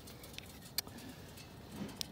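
A faint steady hiss with a single sharp click a little before the middle.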